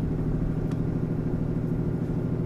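Vehicle engine and road noise heard from inside the cab while driving: a steady low drone.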